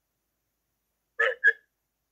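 Two short, clipped vocal sounds from a person in quick succession, a little over a second in.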